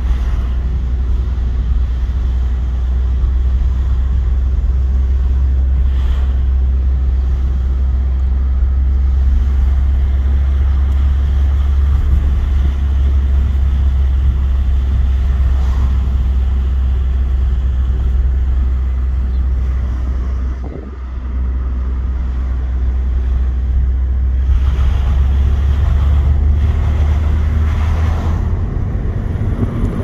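Car engine and road noise heard from inside the cabin while driving: a steady low drone. The drone dips briefly about two-thirds of the way through, with a falling pitch, then builds again.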